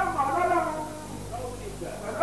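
A high-pitched human voice, speaking or chanting in short phrases.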